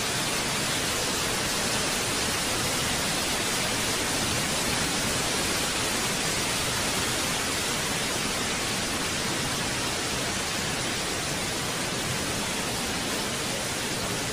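Steady, fairly loud hiss of static noise with no tune or distinct events in it, the distorted noise track laid under an old-film-style animation.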